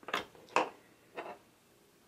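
Three short clicks and clacks of test leads being unplugged and handled, a little more than a second apart at most; the second one is the loudest.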